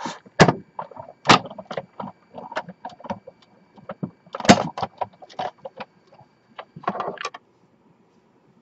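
Sizzix Big Shot die-cutting and embossing machine cranked by hand, an embossing folder between cutting pads rolling through: an irregular run of plastic clicks and creaks with a few louder knocks, stopping about seven seconds in.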